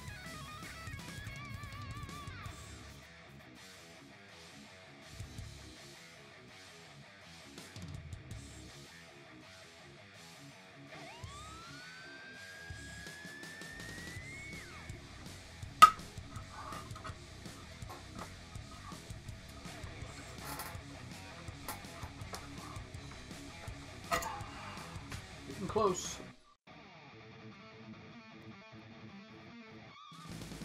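Quiet background guitar music. About halfway through there is one sharp click, and near the end a couple of knocks.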